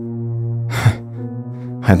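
A man's short, breathy laugh, a single exhale about three-quarters of a second in, over background music of low sustained tones.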